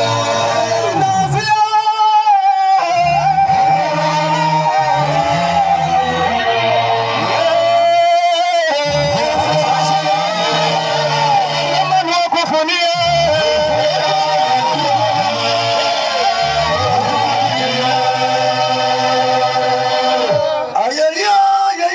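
Gospel band music with guitar over a bass line that moves from note to note, and a voice singing a wavering line briefly, about two seconds in and again around eight seconds in.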